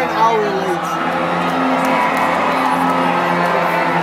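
Live band holding sustained notes over the noise of an arena crowd, with a single whoop from the audience in the first second.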